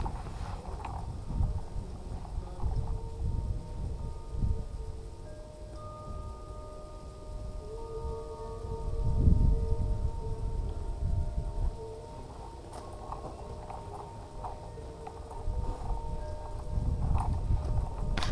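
Wind buffeting the microphone in irregular low gusts, strongest about halfway through and near the end. Faint, thin steady tones, several at once, sound underneath through the middle.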